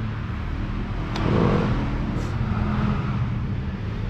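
A motor vehicle engine running nearby: a steady low hum that grows a little louder in the middle and then eases off.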